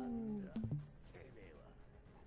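Japanese anime dialogue, quiet in the mix: a gruff male voice shouting a line with a slowly falling pitch that breaks off about half a second in, followed by faint scattered sounds.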